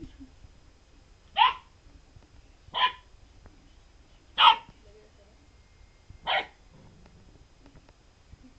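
Golden retriever puppy barking four times, short single barks spaced about one and a half to two seconds apart.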